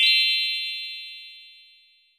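A bright chime sound effect marking the start of a quiz question: a quick rising run of high notes that rings on and fades away over about two seconds.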